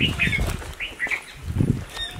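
Birds chirping: a few short, separate chirps.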